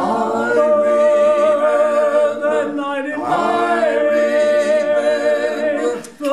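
Male barbershop quartet singing a cappella in four-part harmony, holding long sustained chords, with a brief break about halfway through before the next held chord.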